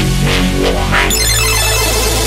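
Rawstyle hard electronic dance music: sustained synth tones over a bass, with short noise swells. A deeper bass note comes in about a second in.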